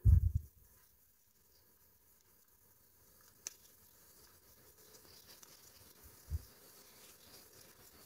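Faint handling sounds of crocheting cotton yarn with a hook, mostly near silence: a short low thump at the very start, a small sharp click about three and a half seconds in, and a soft low bump a little after six seconds.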